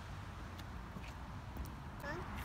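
Faint, steady outdoor background noise, mostly a low rumble, with a few faint light taps.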